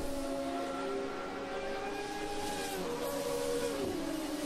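Electronic sound from a game on a smartphone: a steady drone of several held tones, sliding slightly lower near the end.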